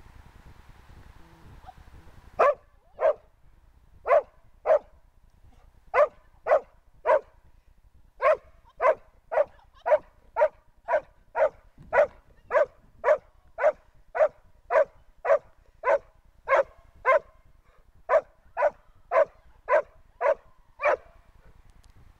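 A dog barking repeatedly, about thirty short barks at roughly two a second, starting a couple of seconds in with a few brief pauses.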